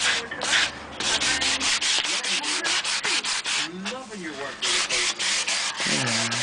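Hand-sanding a wooden Telecaster neck with 180-grit sandpaper on a block, quick back-and-forth strokes about five a second. There are short breaks about a second in and around four seconds, while the neck is shaped from a C to a V profile.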